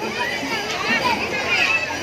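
Many children's voices chattering and calling out at once, a steady overlapping babble of high-pitched voices.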